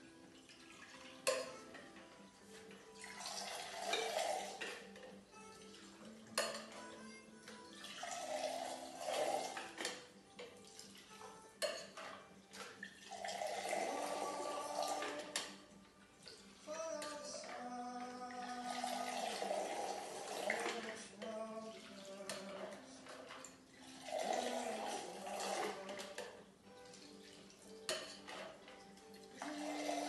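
A cocktail thrown between two metal mixing tins: a stream of liquid pours and splashes into the lower tin about half a dozen times, a few seconds apart, with clinks of metal and ice between the throws. The throwing aerates the drink. Background music plays underneath.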